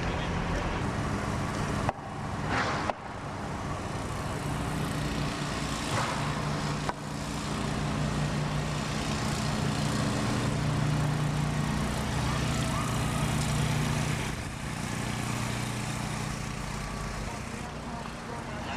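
Steady background noise with a low engine drone and indistinct voices. The sound cuts off abruptly and restarts about two seconds in, again about a second later, and near seven seconds.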